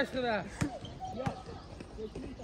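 A football thudding twice on a hard outdoor court, about half a second and a second and a quarter in, after a short spoken word at the start.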